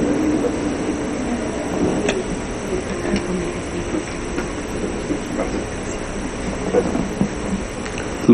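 Electric floor fan running steadily close to the microphone: an even low rumble with a few faint clicks.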